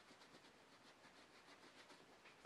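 Very faint rubbing of a paintbrush scrubbing paint onto a vinyl doll head, in quick repeated strokes, barely above near silence.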